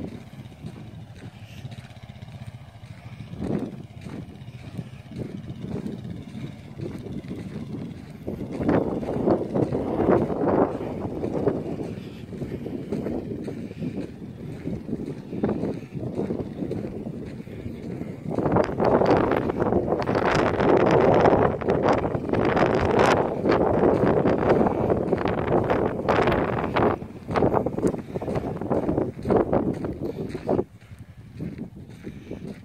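Quad ATV engine running at a distance as it is ridden around, mixed with gusty noise on the microphone that grows loudest in the second half.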